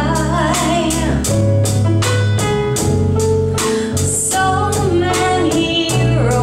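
Live band playing a soft pop song: a woman singing lead over electric bass, keyboard and drums. The drums keep a steady, even beat.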